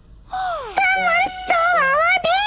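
A high, wordless voice wailing in long, wavering glides of pitch over soft cartoon background music. It starts about a third of a second in.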